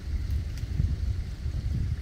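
Wind buffeting the microphone outdoors: an uneven low rumble that flutters, with little above it.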